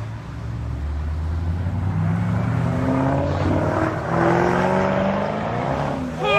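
Ford Mustang engine accelerating hard, its pitch climbing steadily over several seconds, with a louder surge about four seconds in.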